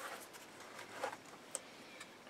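Faint rustling of packaging as small plastic parts are lifted out of a cardboard box, with two light clicks about a second in and shortly after.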